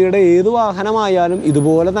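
A person talking continuously, close to the microphone.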